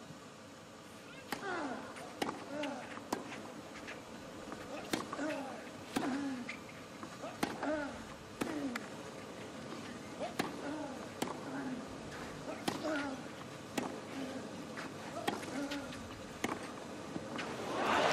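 Long tennis rally on a clay court: a racket strikes the ball about once a second, most shots with a short grunt from the hitting player.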